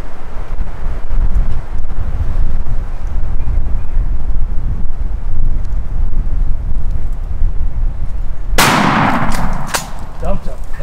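A single shotgun shot about eight and a half seconds in, loud and sudden, its echo dying away over about a second. Before it there is a steady low rumble.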